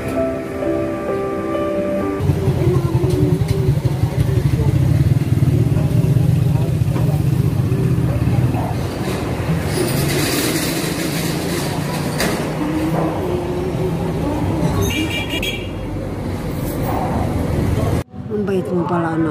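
Background music briefly, then street sound: a motor vehicle engine running close by, low and steady, with traffic noise and voices.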